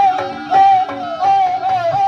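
Jaranan ensemble music: a high, held melody line wavering in pitch, carried over drums and gamelan percussion.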